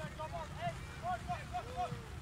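Faint, distant shouts from players on the pitch: a run of short calls, about eight in two seconds, with one longer drawn-out call near the end, over a steady low outdoor rumble.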